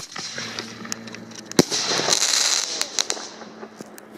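Consumer fireworks going off: a sharp bang at the start and another about a second and a half in, followed by about a second and a half of crackling hiss dotted with small pops, and a few last scattered pops.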